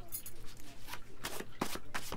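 Tarot cards being shuffled by hand: a run of irregular card snaps and flicks.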